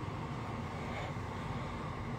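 Steady low rumble with a faint hiss, heard as room background noise through a phone microphone. There is no speech and no distinct event.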